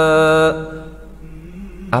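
A man's voice chanting Quranic Arabic, holding one long steady note that breaks off about half a second in. Then only a faint background hum until he starts speaking again at the very end.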